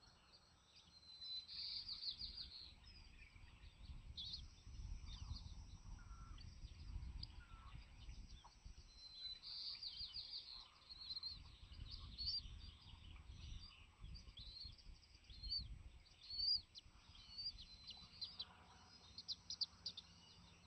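Faint, scattered high bird chirps and short calls, bunched in quick runs near the start and in the middle and coming often in the second half, over a low rumble that swells and fades.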